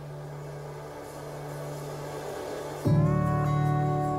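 Background music: a soft held low note, then a fuller, louder chord comes in nearly three seconds in.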